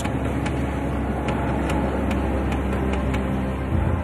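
Dramatic background music: a steady low drone under a quiet ticking beat, about two and a half ticks a second.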